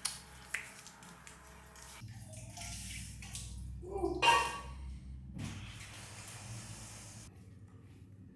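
Water splashing and dripping off wet skin as a person is rinsed from a steel cup, with a couple of small knocks near the start and one brief louder sound about four seconds in.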